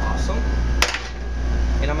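A single sharp knock of kitchenware, about a second in, over the steady low hum of kitchen ventilation.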